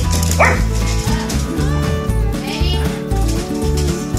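Dogs at play, one giving a sharp bark about half a second in and another short call later, over background music with a repeating bass line.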